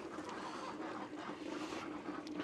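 Faint, steady chatter of a flock of ducks calling inside a closed poultry coop.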